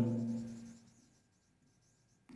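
Faint marker strokes on a whiteboard, a light rubbing as letters are written, after the drawn-out end of a man's word.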